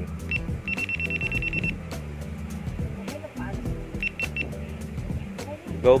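GoPro Hero 7 action camera beeping in response to a voice command: one beep, then a fast run of about ten beeps lasting about a second, then three quick beeps about four seconds in. Background music with steady low notes plays under it.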